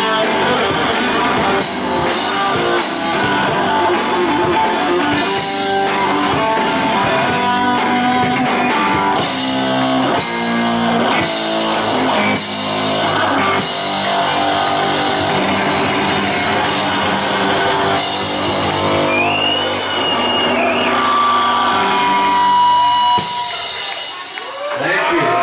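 Live rock band playing: distorted electric guitars, bass and drums with frequent cymbal crashes, then held guitar notes swelling to a loud close. The song stops abruptly at the very end.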